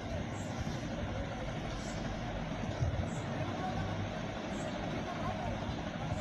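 Crowd noise: many voices talking and calling at once over a steady low rumble.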